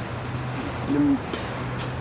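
City street background with a steady low hum, and one short, low hoot-like tone about a second in.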